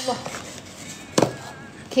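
Plastic wrapping rustling faintly as it is pulled off a packet by hand, with one sharp crackle about a second in.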